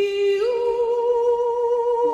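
A solo voice humming a long held note with light vibrato, stepping up in pitch about half a second in, with little or no backing: an unaccompanied vocal intro to a 1960s pop song.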